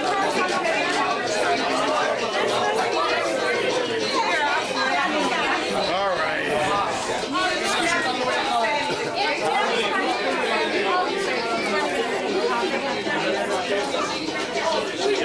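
Crowd chatter: many people talking at once in overlapping conversations, with no single voice standing out, at a steady level throughout.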